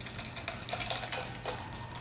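Ice rattling in a cocktail shaker being shaken hard: a fast, dense run of sharp clicks.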